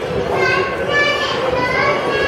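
Children's high voices calling out and chattering over one another, with no clear words.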